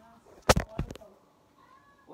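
Two loud bumps on the phone's microphone as it is handled, about a third of a second apart, followed near the end by a faint, short pitched cry.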